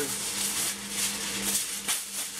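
Aluminium foil being handled and pulled off its roll in the box: a crinkling, rattly rustle with a few sharp clicks.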